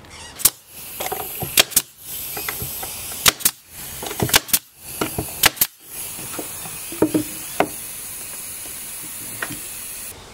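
Pneumatic brad nailer firing brads through a plywood panel into wooden rails: a run of sharp shots over the first eight seconds, many in quick pairs, with a steady high air hiss behind them.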